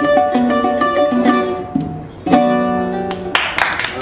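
Greek bouzouki played solo: a run of quick plucked notes, a short fall-off, then a chord struck about two seconds in and left ringing. A burst of noise cuts across it near the end.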